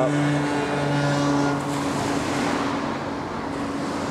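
A motor vehicle's engine humming steadily and fading out about halfway through, over the wash of small waves on a pebble beach.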